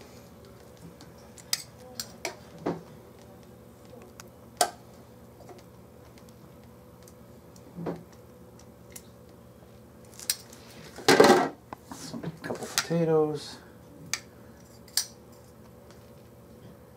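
Metal kitchen tongs clicking and clinking against a china plate and a plastic steamer basket as food is served, in scattered sharp taps with a louder clatter about eleven seconds in.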